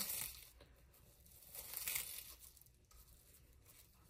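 Clear plastic cling wrap crinkling as it is pulled open around a foam brush. There are two short bursts, one at the start and one about two seconds in.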